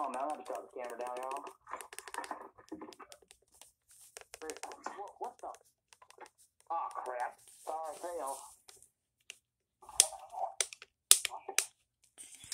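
Plastic buttons on a Midland WR120 weather alert radio clicking as they are pressed over and over, with a few louder clicks near the end.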